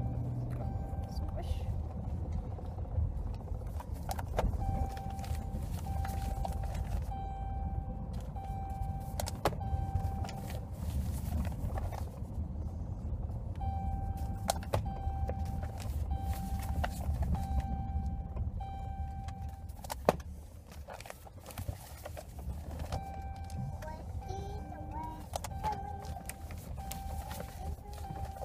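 Car interior with a steady low rumble of the running vehicle, over which newspapers rustle and click as they are rolled and rubber-banded, with a sharp snap about twenty seconds in. A single-pitched beep repeats evenly in three stretches.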